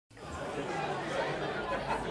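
Faint background chatter of several voices, a steady murmur that fades in at the start.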